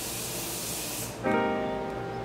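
Morphe Continuous Setting Spray misting in one continuous fine spray: a steady hiss that stops a little after a second in. Then a piano note from background music sounds.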